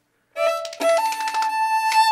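Cape Breton fiddle coming in after a brief silence: a few quick bowed notes, then two notes held together as a double stop from about a second in.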